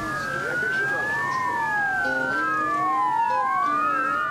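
Several police boat sirens wailing at once, their pitches rising and falling out of step so the tones cross each other, with a few short steady tones about halfway through.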